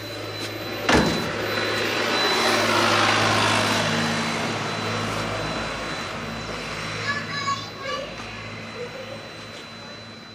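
An insulated cold-room door is pushed shut with a sharp knock about a second in. Then a vehicle passes by, its noise swelling and slowly fading, over the steady low hum of the container's refrigeration unit running.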